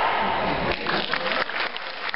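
Audience applauding after a choral piece ends, thinning out near the end.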